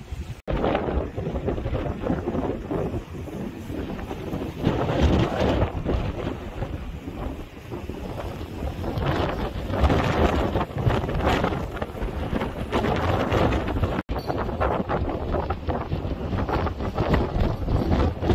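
Strong wind buffeting the microphone in gusts that rise and fall, with two brief dropouts.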